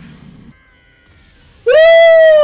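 Mostly quiet at first, then a long, high-pitched vocal cry breaks in loudly near the end, its pitch arching gently and then falling.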